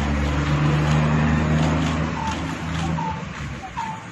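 A motor vehicle engine running with a steady low hum that fades away about three seconds in. A few short high chirps come near the end.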